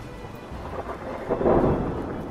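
Thunderclap that builds to a loud crack about one and a half seconds in, then rumbles away, over a hiss of rain.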